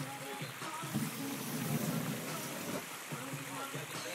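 Indistinct voices over a steady rushing hiss.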